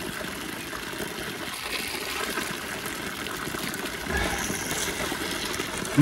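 Spring water pouring in a thin stream from the end of a white plastic pipe and splashing onto rocks: a steady trickle.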